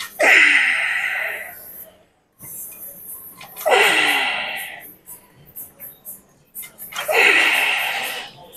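A man's forceful exhalations, each with a falling voiced groan, three times about three and a half seconds apart: the effort breaths of repetitions on a seated leg curl machine.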